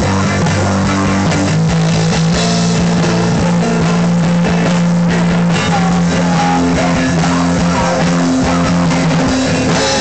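Rock band playing loudly at rehearsal: electric guitar and a drum kit, with long held low chords over steady drum hits.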